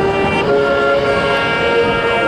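Marching band playing, the brass holding loud sustained chords, moving to a new chord about half a second in.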